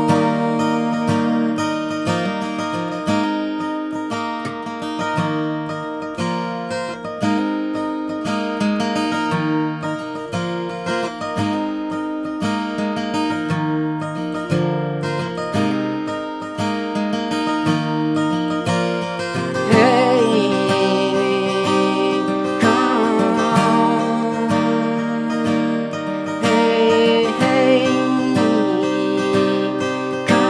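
Acoustic guitar strummed in a steady rhythm, playing an instrumental passage of a slow song. About two-thirds of the way through, a man's singing voice comes in over the guitar.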